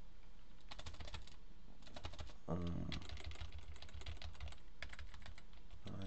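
Computer keyboard being typed on: quick clusters of key clicks, coming in bursts with short gaps, as keys are pressed over and over.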